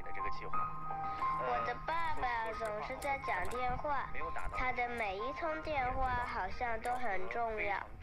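A broadcast station received by a crystal radio with a 1SS106 diode as its detector: a voice over music with held notes, sounding thin, with no top end.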